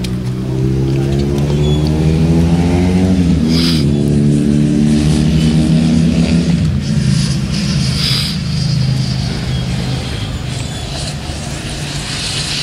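An engine revving, its pitch climbing over the first few seconds, then holding steady before giving way to a duller rumble a little past the middle.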